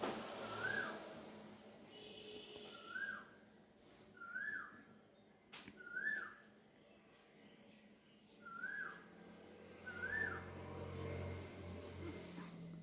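A bird calling: one short whistled chirp that rises then falls, repeated six times at uneven gaps of one and a half to three seconds. A single sharp click comes about halfway through.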